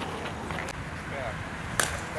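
Faint voices of players and onlookers across an open ball field, with a single sharp click near the end.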